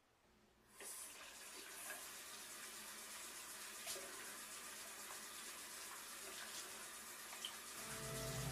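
Water running from a tap into a sink, coming on about a second in, with a few small splashes: washing for ablution (wudu) before prayer.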